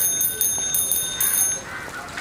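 Bicycle bell rung in quick repeated rings, a bright high metallic ringing in two short runs that stops shortly before the end.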